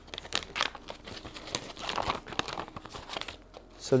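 Paper and cardboard rustling and crinkling as items are rummaged out of a cardboard box, in short irregular crackles.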